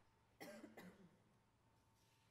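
A person coughing twice in quick succession about half a second in; otherwise near silence.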